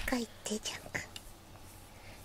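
Soft whispered speech in the first half second, then faint scattered clicks and handling noise.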